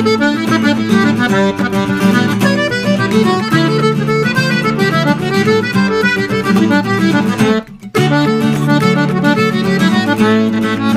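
Accordion and acoustic guitar playing a traditional Irish tune together: a quick run of accordion melody notes over guitar accompaniment. The music breaks off briefly about three-quarters of the way through, then carries on.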